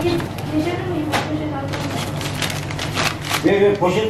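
Paper bag rustling and crisp pastries being handled as they are picked off a baking tray: a cluster of short crackling rustles a little after the middle. Voices talk over it, with a steady low hum underneath.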